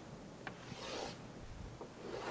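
Chalk drawing on a blackboard, faint: a light tap about half a second in, then a soft scraping stroke around the one-second mark.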